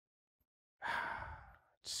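A person's breathy sigh into a close podcast microphone, starting about a second in and lasting about half a second.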